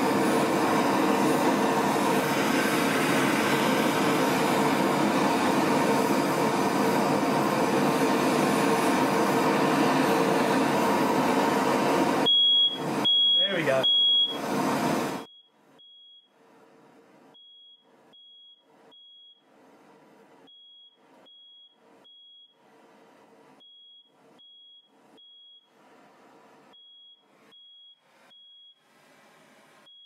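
Steady rushing noise of a MAPP gas torch flame heating an aluminium crankcase, with a fan running. About twelve seconds in, a smoke alarm set off by the brazing heat beeps loudly three times; then the rushing drops away and the alarm keeps beeping faintly in groups of three.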